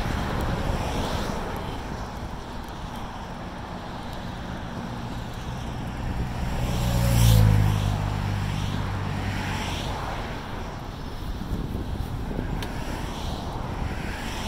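A motor vehicle passing by about halfway through, its engine note rising in loudness and then falling in pitch as it goes past, over steady wind noise on the microphone.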